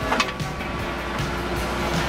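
Skid-steer loader engine running steadily while its auger attachment drills into the ground, with music playing over it.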